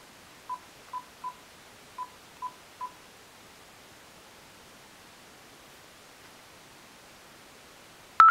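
Faint phone keypad tones: six short beeps in quick, uneven succession as a phone number is dialed. After that there is only faint background hiss.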